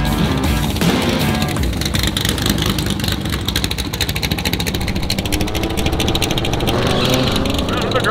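Big-block Mopar V8 of a '66 Plymouth Barracuda gasser (a 440 stroked to 505 ci, twin carburettors on a tunnel ram) running at low speed as the car rolls by, with a loud, rapid, rattling firing beat. Its pitch rises as it is revved in the second half.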